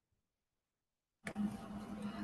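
Silence, then about a second and a quarter in a microphone on the video call opens suddenly, bringing in a steady low hum and background hiss.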